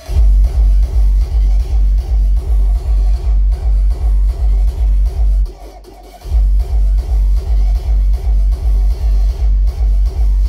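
Hardstyle dance music played loud over a festival sound system, a heavy distorted kick drum hitting about two and a half times a second. The kicks drop out for under a second about halfway, then come back in.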